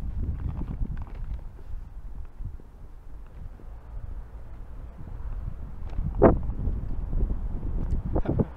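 Wind rumbling on a walking person's action-camera microphone, with footsteps on paving stones. One louder short sound stands out about six seconds in.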